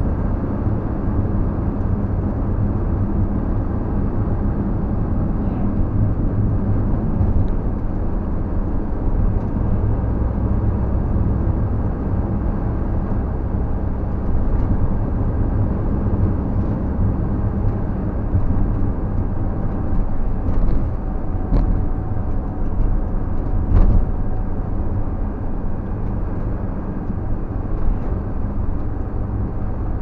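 Steady engine and road noise inside a moving vehicle's cab at cruising speed, with a few short knocks or rattles in the second half, the loudest about three quarters of the way through.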